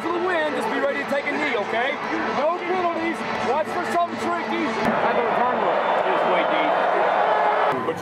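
Several football players' voices shouting and chanting over each other in a team huddle. About five seconds in they become a loud, sustained group yell of many voices, which breaks off suddenly near the end.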